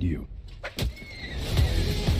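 Movie-trailer audio. A woman's line of dialogue ends at the very start, then there is a sharp hit under a second in. Low whooshing swells of sound design build near the end, leading into the owlbear shot.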